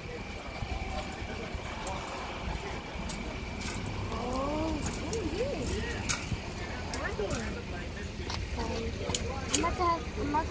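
Indistinct voices rising and falling in pitch, heard a few times with gaps, among scattered sharp clicks and knocks.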